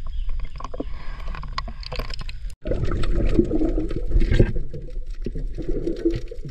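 Water sloshing and gurgling close to the microphone, with a low rumble and scattered small clicks. The sound breaks off abruptly about two and a half seconds in and comes back fuller and more churning.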